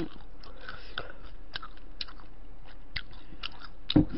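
Close-miked chewing of a spicy rice cake (tteokbokki): scattered soft wet clicks and mouth smacks, with a sharper click near the end.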